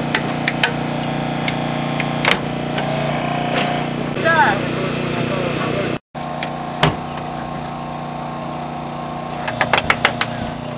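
Small engine of a hydraulic rescue-tool power unit running steadily, with sharp cracks and snaps of car body metal as the hydraulic cutter bites through the pillars. The sound drops out for a moment about six seconds in, with a cluster of snaps near the end.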